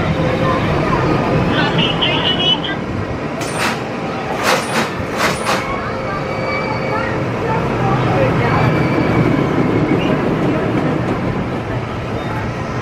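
Roller coaster train rumbling along its track, with a few short sharp bursts about four to five seconds in.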